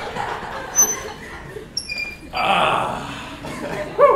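A few short, thin, high squeaks, one about a second in and another cluster near the middle, amid faint rustling and room murmur.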